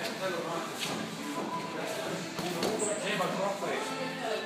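Indistinct voices talking in the background of a boxing gym, with a couple of faint knocks, one about a second in and one near the end.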